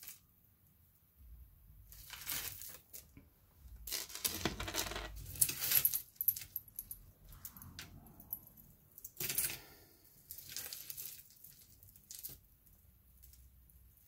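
Metal jewelry chains and beads clinking and rattling as they are handled and laid down on a wooden table, in several short bursts of clinks with quiet gaps between.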